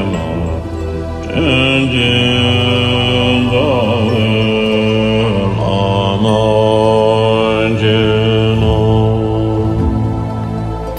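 Melodic Buddhist mantra chant set to music. A voice holds long notes and slides between pitches every second or two, over a steady low drone.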